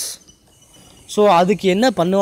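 A person speaking: a word ends with a hiss at the start, then after a pause of about a second comes a long, wavering 'so'.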